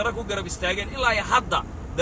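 A man talking over the steady low rumble of a moving car, heard inside the cabin.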